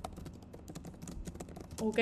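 Typing on a computer keyboard: a fast, irregular run of key clicks as a line of text is entered.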